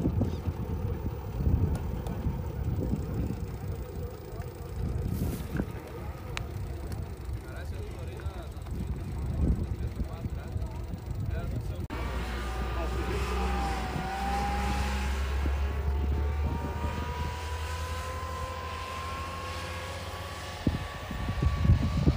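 Outdoor low noise with indistinct voices, then after a sudden change, a wheeled armoured personnel carrier's engine running with a steady low hum and a whine that slowly rises in pitch as the vehicle drives.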